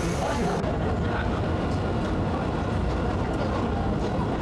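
Steady rumble of a moving Busan Subway Line 1 train heard from inside the passenger car, with passengers' voices over it.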